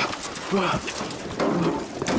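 A person's short excited "oh" cries, called out a few times, each rising and falling in pitch over a steady background hiss.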